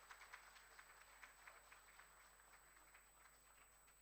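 Faint audience applause, a dense patter of claps that dies away near the end.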